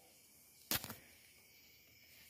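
Near silence with a single short knock about three-quarters of a second in, fading quickly.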